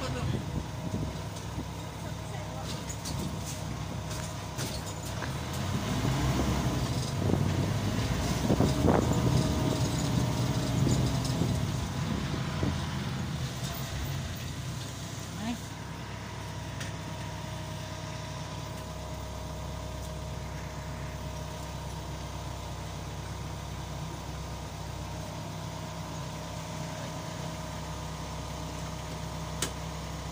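Vehicle engine and road noise heard from inside the cabin. It is louder for several seconds near the middle, with a rising and falling engine note, then settles into a steadier, lower hum in the second half.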